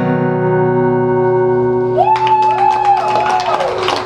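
A final chord strummed on an acoustic guitar and left ringing, fading away over about two seconds as the song ends. About two seconds in, audience applause starts, with a few whoops of cheering.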